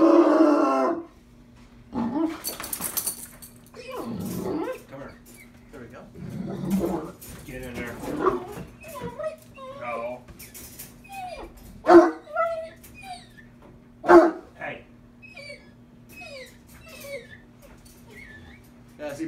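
Bloodhound whining in short rising and falling whimpers, with two sharp barks about twelve and fourteen seconds in. The dog is worked up and agitated.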